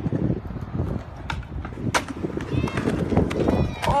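Skateboard wheels rolling over concrete, broken by several sharp clacks of boards hitting the ground. Voices shout faintly near the end.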